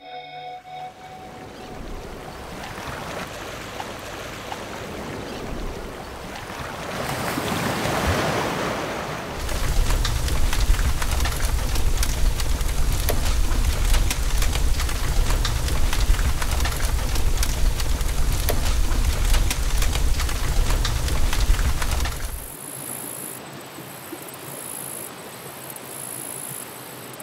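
Surf washing on the shore, swelling to a peak about eight seconds in. A bonfire then burns with a low rumble and dense crackling, which cuts off suddenly near the end and leaves a quieter hiss with a faint high whine.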